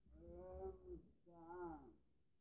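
A man's low voice softly drawing out two long sung notes, unaccompanied.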